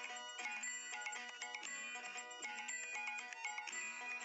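Quiet background music: a simple, clean electronic melody of short steady notes changing every fraction of a second, with no voice.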